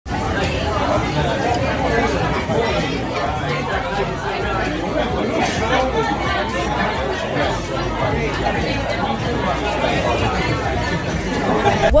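Many people talking at once: the steady babble of a busy restaurant dining room.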